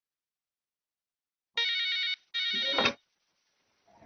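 Desk telephone ringing: two short rings back to back, about a second and a half in.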